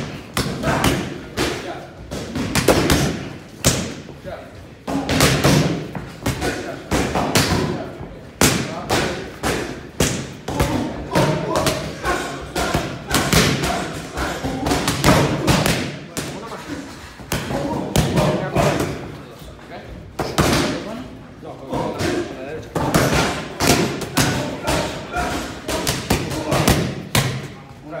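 Boxing gloves smacking into padded focus mitts, repeated punches thrown in quick combinations with short pauses between them.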